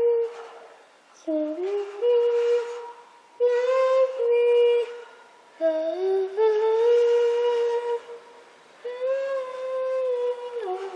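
A child humming a tune into a homemade echo mic, a cup-and-tube toy with a spring inside that gives the voice an echo. The hum comes in about five phrases of held notes with short slides in pitch, broken by brief pauses.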